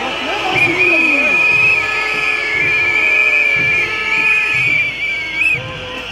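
A shrill, warbling whistle blown in one long blast of about five seconds over crowd noise and scattered voices, then cut off: protesters' whistling in disapproval.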